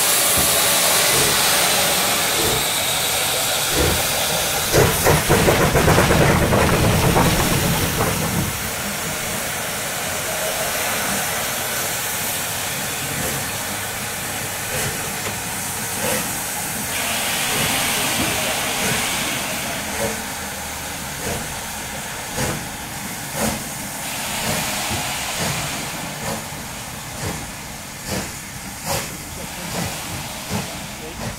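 Rebuilt Bulleid Pacific steam locomotive 34027 Taw Valley starting a heavy ten-coach train, with a loud hiss of escaping steam. About five seconds in comes a flurry of fast exhaust beats as the driving wheels slip under the load. Later the exhaust settles into separate, slowly quickening chuffs as the engine gets the train moving.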